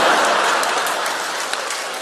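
Audience applause after a punchline in a comic stage monologue, slowly dying down.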